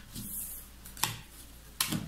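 Cards being picked up off a wooden table one at a time and tapped onto the deck in hand: a short soft slide early on, then two sharp clicks, about a second in and near the end.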